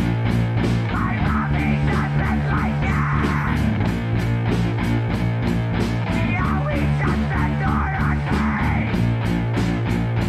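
A punk rock band's demo recording playing: electric guitars and bass over a fast, even drum beat.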